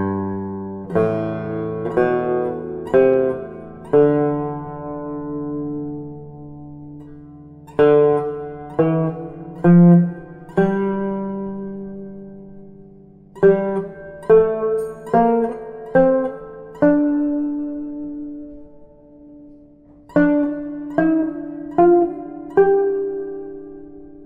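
Turkish tanbur, plucked with a plectrum, playing the Büselik scale extended downward by a Rast pentachord below its root, moving up the scale note by note. It goes in four phrases of four to six plucked notes, each ending on a note left to ring and fade for a few seconds.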